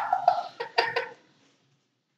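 A few short vocal sounds from a girl, a laugh or cough, then the sound cuts to dead silence about a second in.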